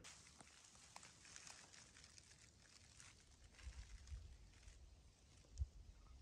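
Near silence: quiet woodland ambience with a few faint low bumps and one soft thump near the end.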